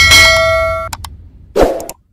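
A bright metallic ding sound effect that rings for under a second, followed by a second short hit about a second and a half in.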